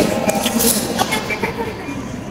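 Indoor background hubbub of a busy lobby: indistinct distant voices over a steady noise, with no clear nearby speech.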